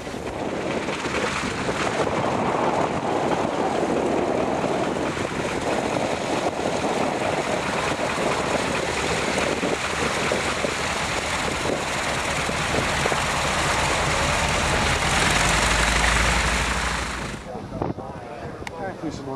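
North American SNJ-4's Pratt & Whitney R-1340 Wasp radial engine running as the trainer taxis past close by. It is steady, swells a little near the end, then cuts off suddenly.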